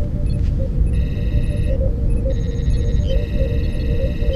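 Science-fiction starship ambience on the soundtrack: a steady deep engine hum with a small repeating blip and runs of high electronic console beeps and trills, starting about a second in and again from about halfway.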